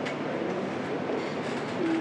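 Steady background noise with hiss, with no distinct event: the room and recording noise of a lecture hall during a pause before a question.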